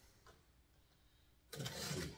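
Near silence, then about one and a half seconds in a box cutter's blade begins slicing along a mailing package, a steady rasp.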